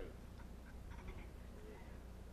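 Quiet hall room tone with a steady low hum, and a few faint voices from the seated audience.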